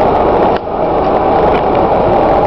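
Steady vehicle running noise, engine and tyres on a snowy road, with a brief dip about half a second in.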